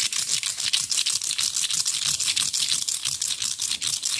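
Rapid, steady scratching-rattling strokes close to the microphone, about ten a second and mostly hissy, made by hand as fast ASMR triggers, likely on a cardboard tube.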